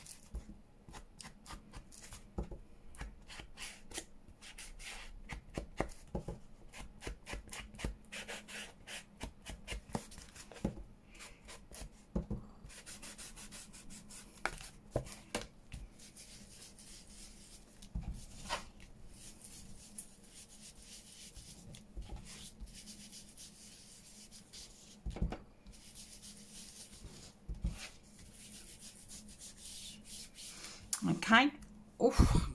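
Ink blending tool rubbed and dabbed over the edges of a paper journal card, inking it: a quiet, irregular run of short scratchy strokes with a few sharper taps.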